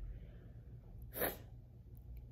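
A child sneezing once, a single short burst about a second in.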